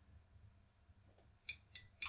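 Two sharp clicks about a quarter second apart, about one and a half seconds in: the PLC trainer's input switch pressed and released, pulsing the decrement input that steps the counter down by one.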